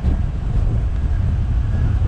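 Wind buffeting the camera microphone on a bicycle riding downhill, a loud steady rumble.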